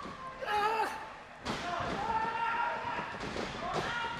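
Wrestlers' feet and bodies thudding on the wrestling ring's canvas, with a sudden thud about a second and a half in, under a crowd shouting in a hall.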